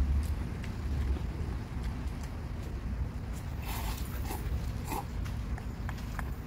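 Noodles being eaten: a few short slurps, about four and five seconds in, with faint clicks over a steady low background rumble.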